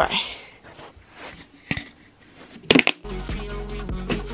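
Light rustling and a quick run of sharp clicks as a handheld camera is moved about and set down on the floor, then background music with a steady beat cuts in suddenly about three seconds in.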